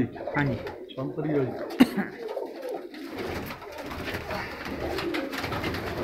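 Domestic pigeons cooing in a small loft, with a single sharp knock about two seconds in.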